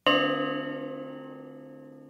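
A bell-like metal chime struck once, ringing with several steady tones that slowly fade away.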